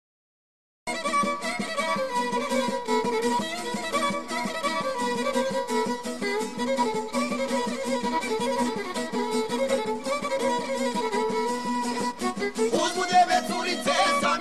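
Silence for about a second, then a new track starts: Bosnian traditional izvorna folk music, an instrumental passage with a violin prominent over the accompaniment. It grows fuller and louder near the end.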